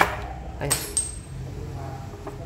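Metallic clicks and clinks of a used Keihin carburetor from a Honda Future II being opened by hand, its top cap taken off and the throttle slide and spring drawn out. A sharp click at the very start, a louder clink with a brief ringing about three-quarters of a second in, and a small click just after.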